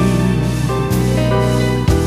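Electronic keyboard playing an instrumental passage between sung lines: held chords over bass notes that change about every second. There is a sharp hit at the start and another near the end.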